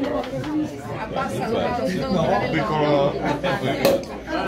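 Several people chattering at once, with a single sharp pop near the end as the cork comes out of a sparkling wine bottle.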